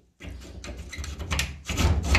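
An old key being worked in the lock of a wooden cabinet door, with the door and its frame knocking and rattling, louder near the end; the key is stuck fast in the lock.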